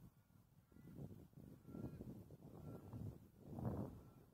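Faint gusty wind buffeting the microphone, a low rumble that rises and falls in waves, with a few faint short high tones over it.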